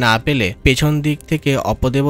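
Speech only: a narrating voice talking without a break.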